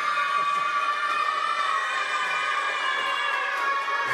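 A group of young boys yelling together in one long, high-pitched cheer that dips slightly in pitch near the end.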